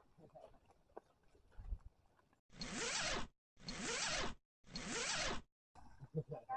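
An edited-in sound effect: the same short noisy swish played three times in a row, each under a second long, with dead silence cut between them, about halfway through.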